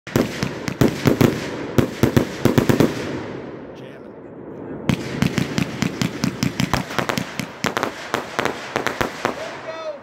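Multi-shot consumer firework cake firing: a fast run of launches and cracking bursts, a lull of about two seconds just before the middle, then a second rapid volley that ends shortly before the close.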